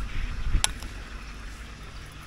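A spoon stirring wet, salted raw fish pieces in a bowl, with one sharp click of the spoon against the bowl a little past half a second in, over a steady low rumble.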